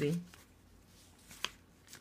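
A single short, sharp click about one and a half seconds in, in near silence after the end of a woman's word.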